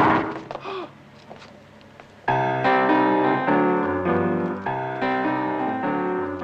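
A loud burst of noise dying away within the first second, then a short quiet stretch. About two seconds in, keyboard music with held, piano-like chords starts and plays on.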